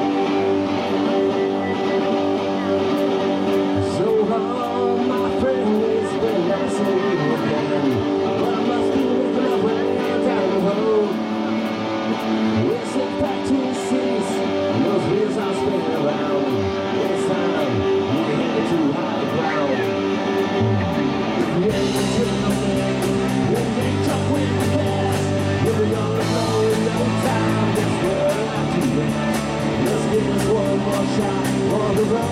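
Live garage-rock band playing the instrumental opening of a song: electric guitars over drums with cymbals. A heavy bass line comes in about two-thirds of the way through, filling out the sound.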